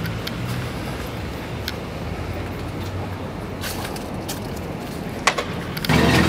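Steady low hum of an idling motor vehicle over street noise, with a few light clicks and a sharper knock near the end as the camera is jostled.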